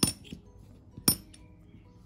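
Large bronze Irish one-penny coins clinking against each other and the mat as they are picked up and turned over: two sharp metallic clinks about a second apart with a short bright ring, and a few light ticks between.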